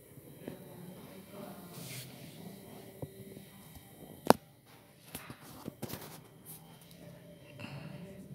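Quiet room background with faint, indistinct voices, a single sharp click about four seconds in, and a few softer clicks and knocks shortly after.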